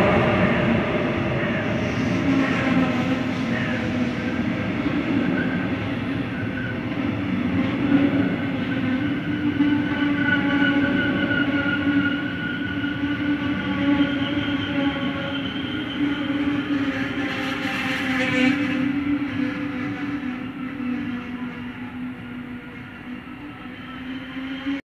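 Metronom double-deck coaches, hauled by an electric locomotive, rolling past along a station platform: a steady rumble of wheels with a whine of several steady tones over it, slowly getting quieter toward the end.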